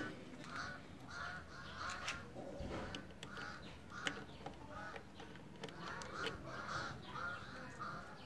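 Faint bird calls in the background: short, harsh calls repeated two or three times a second, with a few faint clicks.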